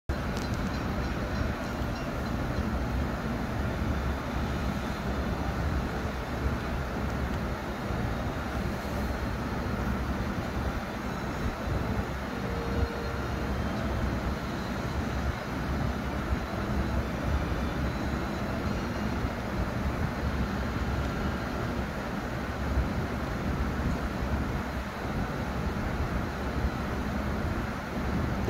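Steady rumble of street traffic and a train from a film's soundtrack, played through a television's speakers and picked up across the room.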